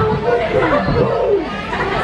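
Many girls' voices chattering and talking over one another as a group.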